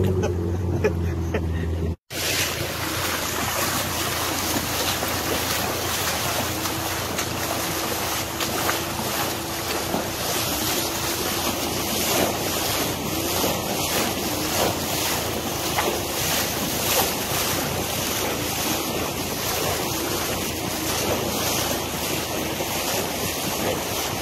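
Fast shallow river water rushing past a wooden dugout boat and the legs of men wading as they push it, with wind noise on the microphone. In the first two seconds a low engine hum is also heard, ending in a sudden cut.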